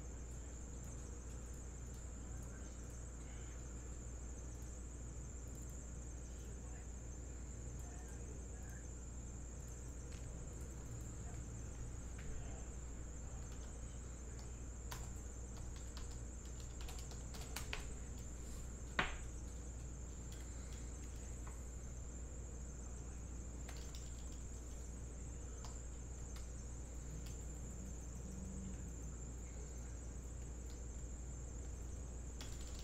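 Faint steady high-pitched electronic whine and low hum from the recording chain, with a scattered run of light computer keyboard and mouse clicks a little past halfway and one sharper click about two-thirds of the way through.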